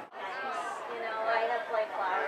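Indistinct chatter of several voices talking at once, after a brief dropout at the very start.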